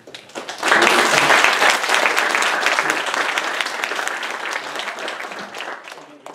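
Audience applauding, swelling quickly in the first second and then slowly dying away.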